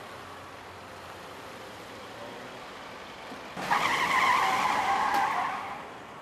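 A car's tyres squealing as it pulls away fast, starting about three and a half seconds in and lasting about two seconds before fading.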